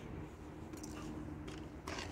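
Quiet background: a faint, steady low hum with no distinct event.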